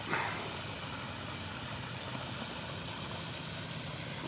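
Steady low background rumble with an even hiss, like distant engines or machinery, with no distinct events.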